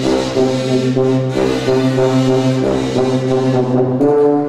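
Kazoos buzzing sustained chords over a tuba holding a low bass note, the chord changing about every second and a half.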